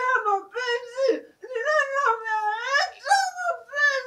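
A high-pitched voice wailing and whimpering in a string of drawn-out, wavering cries, each about a second long, with one long cry rising at its end near the middle.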